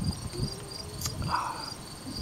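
Insects chirping: a high, evenly pulsing chirp several times a second over a steady higher trill, with a single faint click about a second in.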